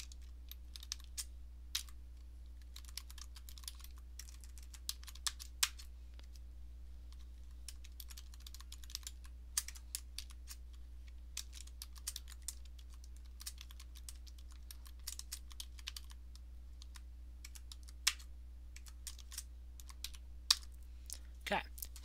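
Typing on a computer keyboard: quiet, irregular runs of keystrokes with short pauses, and a few sharper clicks near the end.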